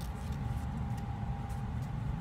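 A steady low mechanical hum with a thin, steady higher tone over it. A few faint crinkles of a burger's paper wrapper come as the burger is lifted.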